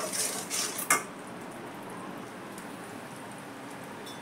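A steel spatula scrapes and stirs a stainless steel kadhai of cooking syrup in a few quick strokes, ending in one sharp metal knock against the pan about a second in. A steady faint hiss follows.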